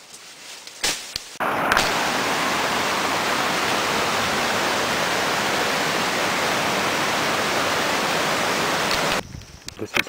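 Loud, steady rush of water from a rocky jungle stream, starting abruptly about a second and a half in and cutting off about a second before the end.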